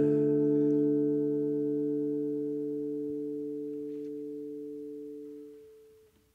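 Acoustic guitar's final chord ringing out and fading steadily, dying away just before the end.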